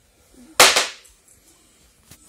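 A single sharp rip-and-snap about half a second in, over within a fraction of a second: a small toy packet being torn open by hand.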